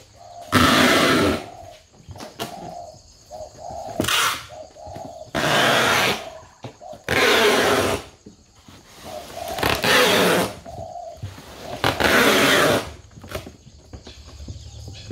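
Spotted doves cooing in short low notes, broken by six loud rushing noise bursts, each about half a second to a second long, at uneven intervals.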